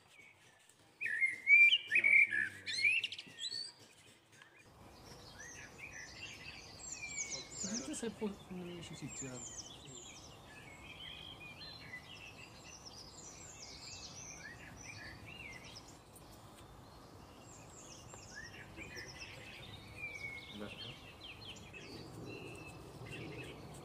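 Small birds chirping: a loud run of high chirps in the first few seconds, then chirping that goes on almost without a break over a steady low hiss from about five seconds in.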